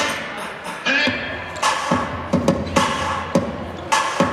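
Hip-hop dance music played over speakers in a gymnasium. The beat thins out briefly at the start, then comes back with loud drum hits from about a second in.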